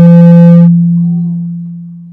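Microphone feedback through the room's speakers: a loud low howl that swells, holds for under a second and then fades away, with a brief higher buzzing tone over it at the start. It comes from someone leaning too close to a microphone.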